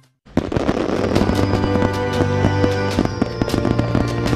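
Fireworks popping and crackling over music, starting after a brief silence right at the start.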